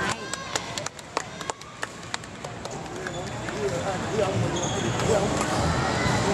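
Badminton doubles rally on an indoor court: a run of sharp clicks of racket strikes on the shuttlecock and quick footwork in the first couple of seconds, then brief high squeaks of court shoes on the floor. Voices and chatter rise in the hall behind it.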